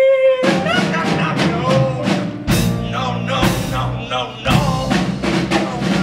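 A held sung final note cuts off about half a second in, then a live pit band with drum kit plays the song's closing bars, punctuated by several loud accented hits.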